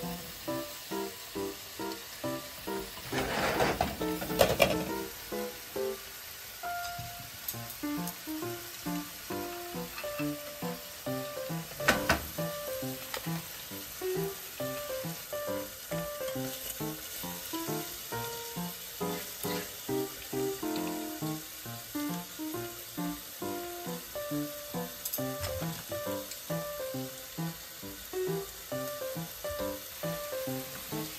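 Ham and cheese sandwiches sizzling in a covered grill pan, under background music with a steady beat. A louder, noisy burst comes about three to five seconds in, and a sharp knock about twelve seconds in.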